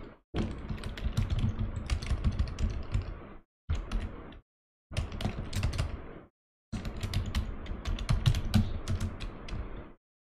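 Typing on a computer keyboard: rapid keystroke clicks in four runs, broken by brief silent pauses.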